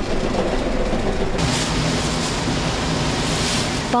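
Dried-bonito shaving machine running with a steady hum; about a second and a half in, a loud hiss joins it as its blades shave the fish into thin flakes.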